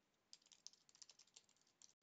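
Near silence with a few faint, scattered clicks of a computer keyboard.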